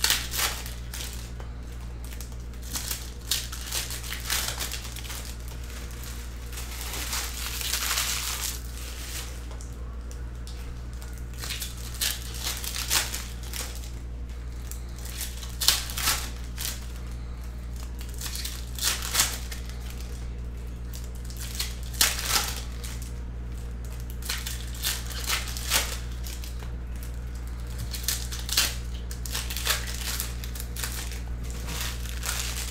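Foil trading-card pack wrappers crinkling and tearing as the packs are opened by hand, in irregular short bursts with a longer rustle about eight seconds in. A steady low hum runs underneath.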